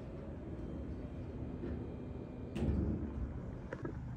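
A steady low rumble, with a dull thump about two and a half seconds in and a short click near the end.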